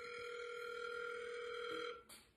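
Phone ringback tone on an outgoing call: a single steady ring about two seconds long that cuts off sharply, the call still waiting to be answered.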